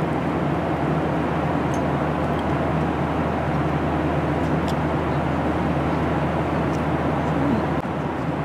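Steady cabin noise of a Boeing 737-800 airliner in cruise: a constant rush of airflow and engine hum, with a few faint ticks.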